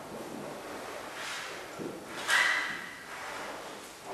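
Hall room noise before the brass ensemble begins playing: faint shuffling, then one brief sharp noise with a short high squeak about two seconds in, like a chair creak or a stand being moved.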